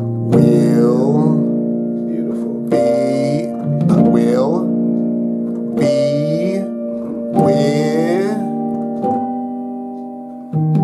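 Piano playing a slow series of rich gospel chord voicings, each chord struck and left ringing, a new one every second or two, with a voice singing along over them.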